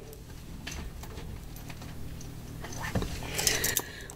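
Quiet handling sounds from a boxed deck of oracle cards being picked up: a few soft taps, then a brief rustle near the end.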